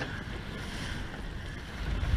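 Wind rumbling on the microphone over water rushing along the hull of a surfboat being rowed at sea, with a stronger gust of rumble near the end.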